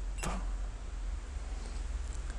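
Steady low hum and hiss of room tone, with one short click about a quarter second in.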